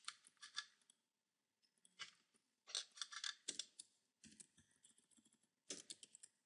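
Faint clicks of a computer keyboard and mouse, in short irregular clusters.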